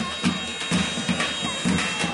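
Davul bass drum and zurna shawm playing traditional wrestling music: a steady drum beat, about two or three strokes a second, under the zurna's high, held notes.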